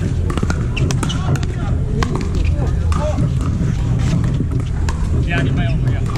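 Pickleball paddles striking plastic balls, sharp pops coming at irregular intervals from several courts at once, with indistinct players' voices over a steady low rumble.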